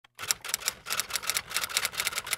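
Typewriter sound effect: a fast run of key clicks, about six or seven a second.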